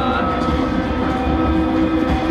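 Music from the TV episode's soundtrack: chords held steadily over a deep, loud rumble.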